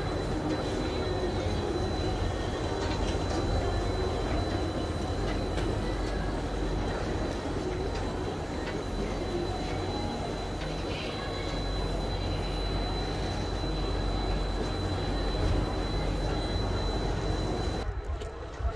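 Chairlift running through its boarding terminal: a steady mechanical rumble of the haul rope and chairs passing over the station wheels, with a thin high whine and occasional clicks.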